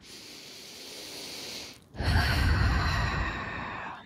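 A woman taking one slow, deliberate deep breath close to a headset microphone: a soft inhale for about two seconds, then a louder exhale that puffs on the microphone.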